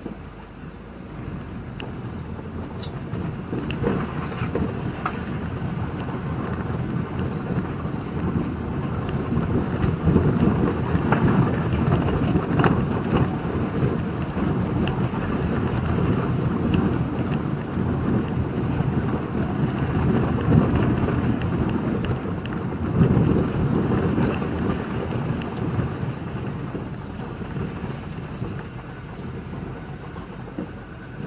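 BMW roadster driving slowly along a rough town street: a steady rumble of tyre and road noise with small knocks and rattles, growing louder through the middle and easing off near the end.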